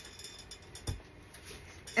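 A single short thump about halfway through, over quiet room tone.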